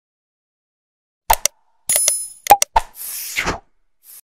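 Sound effects from an animated like and subscribe outro. After about a second of silence come a few sharp pops and clicks, a short bell-like ding and a brief whoosh.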